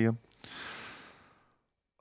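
A man's breath out, a sigh into a close headset microphone, fading away over about a second, with a small mouth click just before it.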